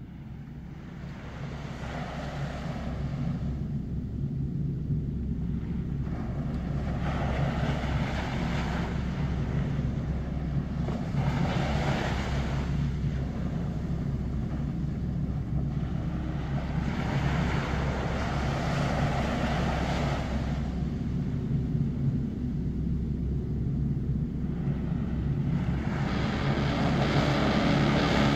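Ambient doom metal intro: a low sustained drone under noisy washes that swell and fade every few seconds, the whole growing steadily louder.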